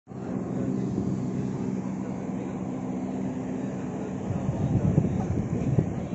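A steady low hum made of several even tones. From about four seconds in, irregular soft knocks and thumps are heard over it.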